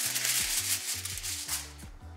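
A sheet of aluminium foil crinkling as it is handled and spread flat, dying away in the last half second.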